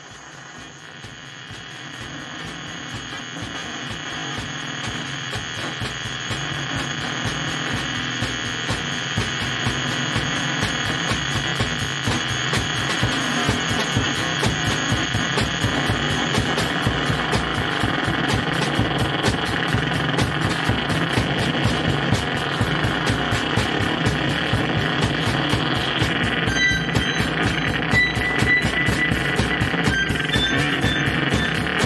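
Improvised experimental rock music: a dense, noisy drone with a rapid pulsing fades in over the first ten seconds and then holds. A few high, steady tones come in a few seconds before the end.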